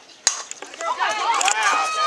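A softball bat strikes the ball once, a single sharp hit about a quarter second in, on a home-run swing. Spectators then start shouting and cheering, louder toward the end.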